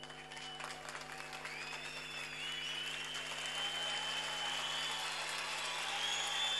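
Large crowd applauding and cheering, slowly building in loudness, with long high whistles drawn out over it and a steady low hum beneath.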